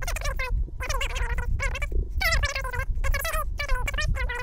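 A high-pitched, rapid chattering voice, like speech played back sped up, with a steady low rumble underneath.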